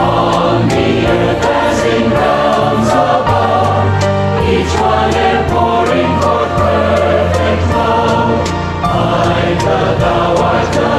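Choir singing a devotional hymn, its chords held and changing every second or so over a steady low bass.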